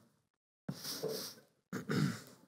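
Two short breathy rustles as people sit down into leather Chesterfield sofas: clothing and papers brushing and the cushions giving, the first about two-thirds of a second in, the second just before the end.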